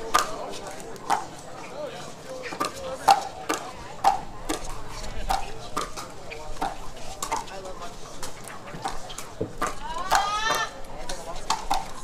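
Pickleball paddles striking the hollow plastic ball in a long dinking rally, sharp pops about twice a second, over a crowd murmur. About ten seconds in, a brief high squeal.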